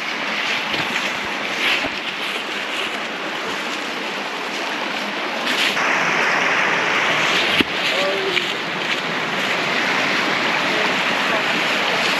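Rushing creek water tumbling over rocks and small cascades, a steady hiss that grows louder about halfway through.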